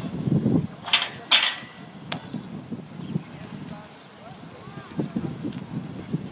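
Pole vault attempt: low thuds in the first half-second, then two sharp clacks with a brief ring about a second in, the loudest sounds, as the pole and vaulter come down.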